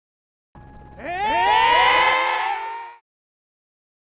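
Title-card sound effect: a faint steady tone, then about a second in a loud cluster of tones sliding upward together and holding, which cuts off sharply about three seconds in.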